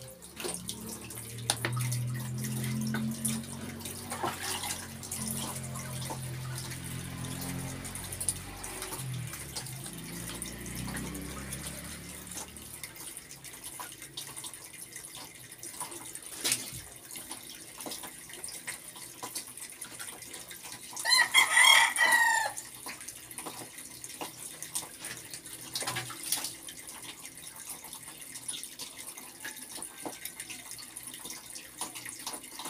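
Water splashing and pouring as a person bathes, with scattered small splashes throughout. About two-thirds of the way in a rooster crows once, the loudest sound. A low steady drone runs under the first part and stops a little before halfway.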